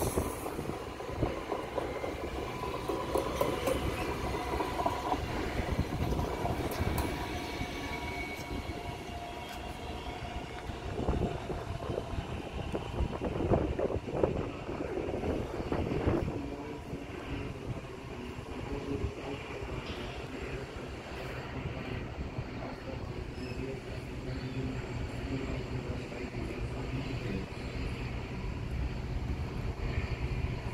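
DB class 442 (Talent 2) electric multiple unit running along the station tracks, its wheels rumbling on the rails. A steady whine from its electric drive is heard for the first few seconds, and a low hum continues after that.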